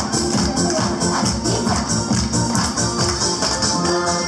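Dance music with a steady beat and light percussion, played for a group dance routine.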